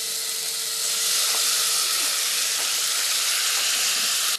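Diced tomatoes sizzling in a hot pot as they are scraped in from a cutting board: a steady, dense hiss that grows louder about a second in.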